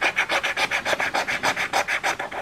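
Rapid scratching of the coating off a paper scratch-off lottery ticket, in quick even strokes about eight a second.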